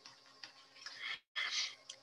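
Faint ticks and two short soft puffs of noise over a low microphone hiss, with a brief cut to total silence about a second in.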